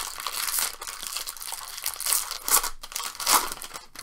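Plastic wrapper of a Topps baseball-card jumbo pack crinkling and tearing as it is ripped open by hand, with a few sharper, louder rips in the second half.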